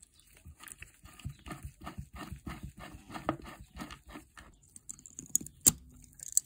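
Flat-blade screwdriver scraping and prying at the corroded brass contacts of an old ceramic lamp socket in quick repeated strokes, about four a second, then a few sharp metallic clicks near the end, the last one loudest.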